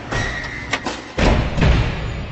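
Logo-reveal sound effects for a video intro: a rush of noise with a brief high tone and two sharp clicks, then two heavy low thuds about a second in and near the end, the second the loudest, leaving a fading rumble.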